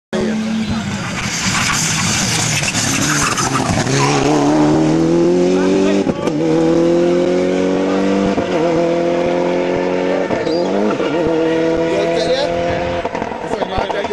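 Toyota Celica GT4 rally car's turbocharged four-cylinder engine passing close with a loud rush of noise, then accelerating hard away, its pitch climbing and dropping back with an upshift about every two seconds, three times, before fading near the end.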